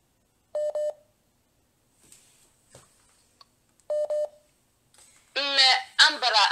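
Telephone tone beeping twice, about three seconds apart, each beep a quick double pulse at a steady pitch. It sounds like a call-waiting signal for another incoming call.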